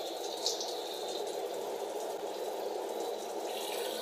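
Shower head running: a steady spray of water falling without a break.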